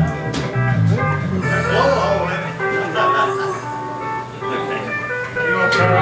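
A live country band's guitars and pedal steel playing loosely between songs, with notes held and changing and one note sliding down near the end, while people talk over it.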